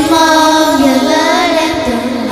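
A small group of children singing a Vietnamese song over instrumental backing music, the voices coming in at the start.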